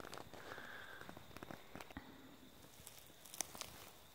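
Quiet background with scattered faint clicks and light rustles, and one sharper click about three and a half seconds in.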